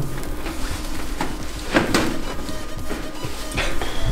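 Background music, with several sharp clinks and scrapes of a steel wire-mesh cage being pulled at by hand; the loudest comes a little under two seconds in.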